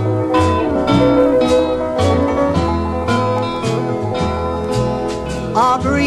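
Instrumental break of a 1960s country song: guitars over a walking bass line with a steady beat, no singing.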